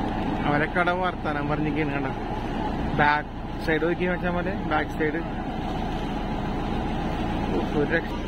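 Small wooden motor boat's engine running steadily while under way, a constant low drone, with voices talking over it in the first half.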